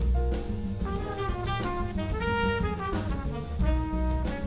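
Small jazz combo playing a tune: trumpet and tenor saxophone carry the melody together over walking upright bass and a drum kit with steady cymbal and drum strokes.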